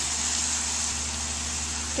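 Onions and spice powders frying in oil in a kadai: a steady, even hiss, with a low steady hum underneath.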